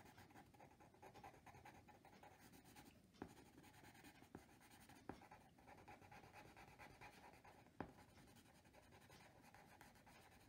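Faint scratching of a graphite pencil shading on paper, with a few light ticks as the point touches down.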